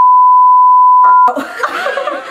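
A loud, steady, single-pitch censor bleep dubbed over the audio, held for about a second and a half and cutting off abruptly. Laughter follows.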